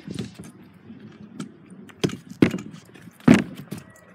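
MGP stunt scooter's wheels and aluminium deck knocking on plywood boards during a 90-degree trick: three sharp clacks in the second half, the last and loudest near the end as the scooter lands.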